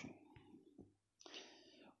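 Near silence: a pause in the narration, with a faint soft hiss in the second half.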